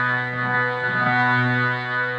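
Music: a harmonium holding a steady low drone note with a full, reedy stack of overtones, with a few fainter melody notes moving over it about halfway through.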